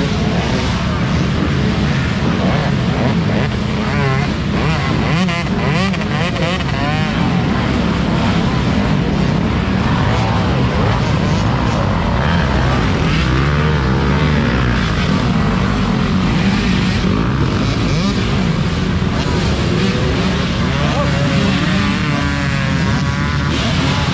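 Several off-road dirt bike engines running loud and continuously, their pitch rising and falling as the riders work the throttle.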